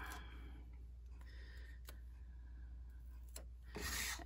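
Faint rubbing and rustling of a patterned-paper card frame being handled, with a few light clicks.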